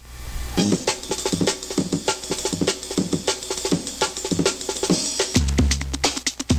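A sampled drum-break loop played back by an ISD1760 chip sample player driven by an Arduino, with quick, dense drum hits. The sound briefly drops out at the start and picks up again about half a second in, and low bass notes join near the end.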